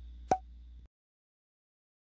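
A single short pop sound effect about a third of a second in, of the kind laid under an on-screen sticker appearing, over a faint low hum that cuts off abruptly just under a second in, leaving dead silence.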